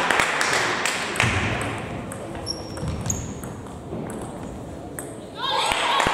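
Table tennis balls clicking sharply off tables and bats in a large hall, over a background of voices; the clicks come thickly in the first second or so, then sparsely. Near the end a voice calls out loudly.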